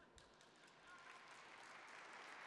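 An audience begins to applaud, faint scattered claps at first, swelling steadily into fuller applause.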